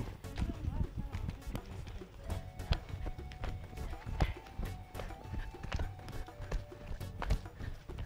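Many feet stamping and scuffing on dry bare ground as a group marches and runs in drill, a rapid uneven patter of footfalls. Music with a few held notes plays underneath in the middle.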